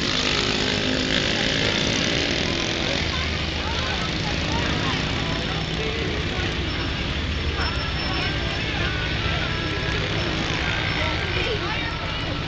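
Pickup truck driving slowly past, its engine running steadily, over the chatter of a street crowd.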